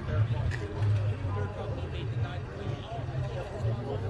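People talking in the background, several voices mixed, over a steady low rumble.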